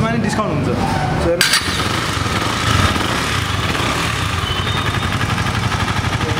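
KTM Duke motorcycle's single-cylinder engine running steadily. About a second and a half in, it suddenly gets fuller and louder.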